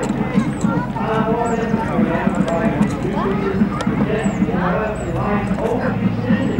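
Indistinct voices of people talking, with short high falling chirps repeating about once a second over them.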